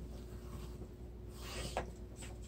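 Faint scratchy rubbing of a Fiskars Boxmaker stylus drawn along the board's scoring channel across patterned paper, scoring a fold line. There is a light tap about three quarters of the way through.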